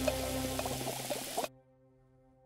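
Tomato sauce bubbling in a pan as a wooden spoon stirs it, under soft background music. The kitchen sound cuts off suddenly about one and a half seconds in, leaving only faint music.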